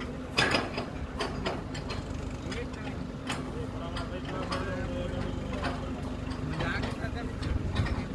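Truck-mounted borewell drilling rig's engine running steadily, with several sharp clanks of drill pipe being handled at the rig, the loudest about half a second in.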